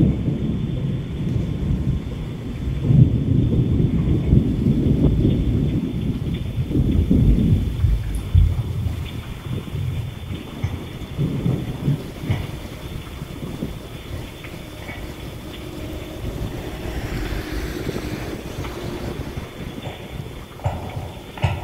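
Thunder rumbling over steady rain. The rumble is loudest a few seconds in and dies away through the second half.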